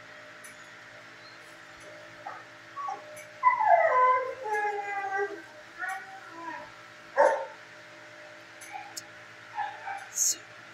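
Dog whining: a long whine that falls in pitch a few seconds in, followed by several shorter whimpers and a brief sharp yip.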